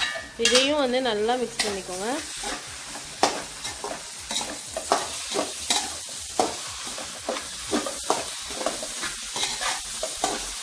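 Spatula scraping and knocking against a metal pan as shredded parotta with chicken gravy is stirred and fried, with light sizzling; the strokes come irregularly, a few each second. A wavering pitched tone sounds briefly in the first two seconds.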